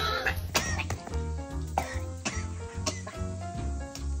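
A woman coughing repeatedly after swallowing a mouthful of sauerkraut juice, the vinegar catching her throat, over background music.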